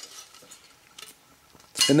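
A few faint clicks and light metal clinks as a thin aluminium aircraft part is picked up and handled.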